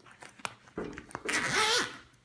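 The zipper on a Kayline soft-top door window being pulled along its track, a rasping run of about a second starting a little under a second in. It is preceded by a couple of small clicks.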